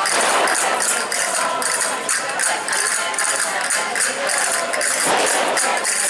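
Live traditional folk dance music from a costumed street band, with a quick, steady beat of sharp high clicks from hand percussion running through it.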